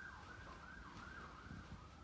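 Faint emergency-vehicle siren in yelp mode, its pitch rising and falling about two to three times a second, then settling into a steadier tone near the end.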